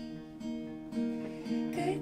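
Acoustic guitar playing held, strummed chords between sung lines of a live unplugged pop song, with the female singing voice coming back in near the end.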